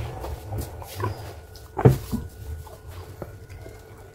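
A person gulping water from a glass, with swallowing sounds and one louder throat sound about two seconds in.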